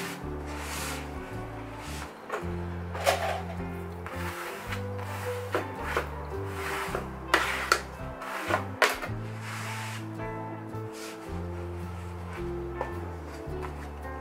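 Background music with steady bass notes, with a few short knocks and rubs as fabric and cardboard boards are handled on a table.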